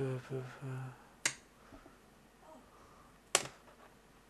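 Two sharp, snap-like clicks about two seconds apart, the second the louder, after a brief spoken "oh".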